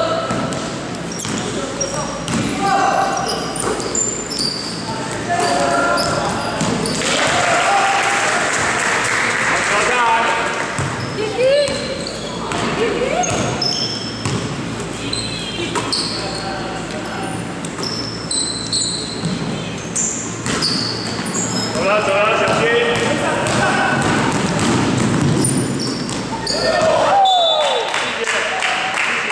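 Basketball being dribbled on a hardwood gym floor during play, with sneakers squeaking and voices shouting in the echoing hall.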